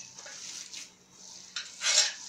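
Hands kneading and squishing a moist bulgur mixture in a metal bowl, with a sharper burst of noise near the end.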